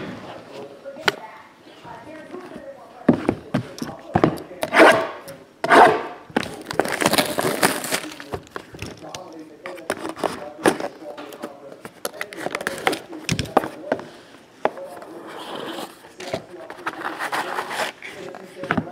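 Hands opening and handling a cardboard trading-card box and its foam-lined insert: an irregular run of knocks, scrapes and rustles, with a longer rasping rustle around the middle.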